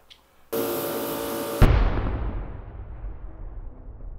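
Edited-in outro sound effect: about half a second in, a loud sustained buzzy tone of many pitches, cut off a second later by a deep boom that rings out and slowly fades away.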